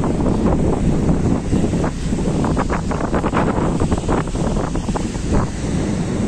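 Strong wind buffeting the microphone as a steady low rumble, with sea surf washing on the beach beneath it.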